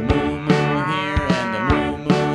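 A cow mooing once, a long moo that rises and then falls in pitch, over a children's song backing with a steady beat.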